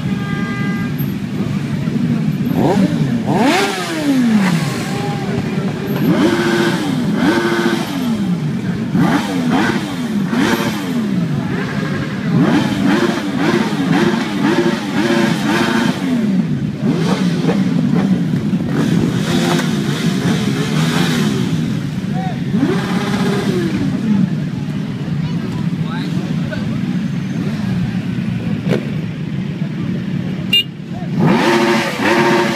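A procession of motorcycles riding slowly past one after another. Their engines rev up and drop back again and again over the steady running of many engines at low revs.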